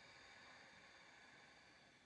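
Near silence, with a faint, long, breathy hiss of a person's breath that stops shortly before the end.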